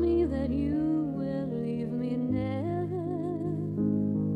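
A slow ballad: a woman's voice sings a legato melody over sustained keyboard chords and held bass notes, with vibrato on a long note in the second half.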